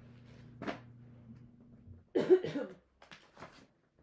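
A woman coughs sharply about two seconds in, followed by a few fainter breathy sounds.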